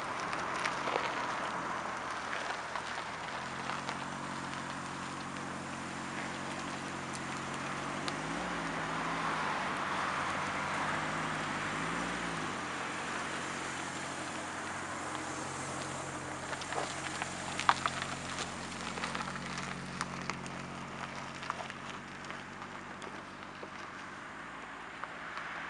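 BMW 735i (E38) V8 engine idling, its note briefly rising twice near the middle as the throttle is blipped, then settling back to a steady idle. A steady hiss runs underneath, with a few sharp clicks later on.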